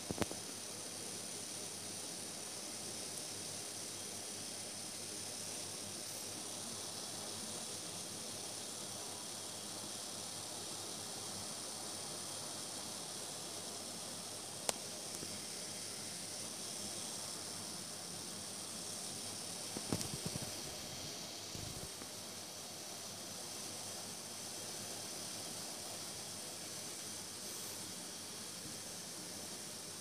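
Steady hiss of background room noise, with one sharp click about halfway through and a few soft knocks a little later.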